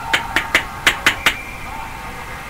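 About six sharp knocks in quick succession in the first second and a half, the clack of hockey sticks and puck at an ice rink.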